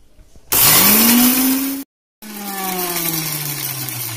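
Electric mixer grinder (mixie) motor switched on: its whine rises in pitch as it spins up and runs loud for about a second. After a short gap of dead silence it is heard winding down, the pitch falling steadily as the motor coasts to a stop.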